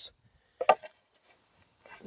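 A couple of short wooden knocks about two-thirds of a second in, as a wooden stave is worked against wooden poles; quiet otherwise.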